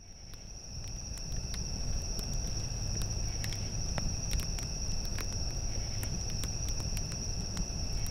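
Night ambience of crickets chirping in a steady high-pitched chorus, fading in over the first second or two over a low rumble, with scattered sharp crackles throughout.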